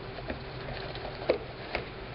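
Hands patting and scrunching glue-damp fabric onto a journal cover: soft rustling with a few light taps, the sharpest a little past halfway.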